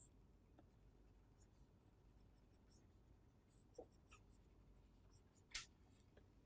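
Near silence with faint, scattered scratches and taps of a stylus drawing on a pen tablet, the loudest a little before the end.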